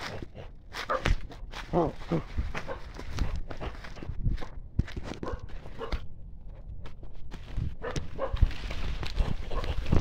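Dog barking at intervals over running footsteps and leaves and branches brushing past a handheld phone as it moves through undergrowth, with rumbling handling noise.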